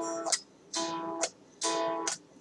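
Solid-body electric guitar played unamplified, its bare strings picked up directly: the same chord struck three times, each ringing briefly. Record monitoring is still off, so no amp or interface sound is heard.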